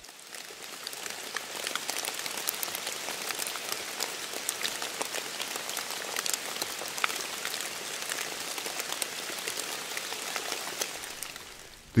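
Steady rain falling, with many separate drops ticking through an even hiss. It fades in at the start and fades out near the end.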